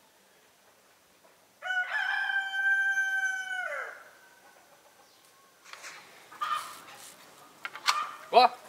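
A rooster crowing once: a single long call of about two seconds that holds steady and then falls away at the end. Fainter, brief scratchy sounds follow near the end.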